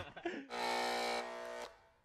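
Short electronic buzzing tone of a logo sting, held steady for about a second and then cutting off suddenly.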